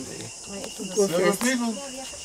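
Steady high-pitched drone of tropical forest insects, with voices of people talking over it from about half a second in.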